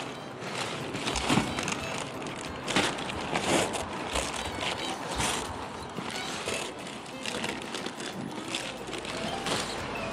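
Rustling and crinkling of an insulated food-delivery backpack being opened and rummaged through by hand: the nylon cover and foil lining rustle, with irregular small scrapes and clicks.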